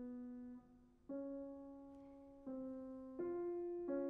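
Grand piano played slowly in the middle register, four notes or chords struck one after another, each left to ring and fade. The held sound from before is released about half a second in, leaving a short gap before the next strike.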